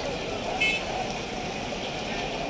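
Roadside traffic noise with crowd chatter, and a brief high vehicle-horn toot about half a second in.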